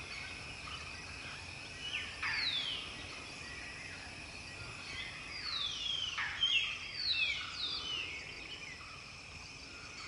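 Forest ambience: a steady high insect drone underneath, with birds calling in downward-sliding whistled notes, once about two seconds in and in a cluster of several calls between about five and eight seconds.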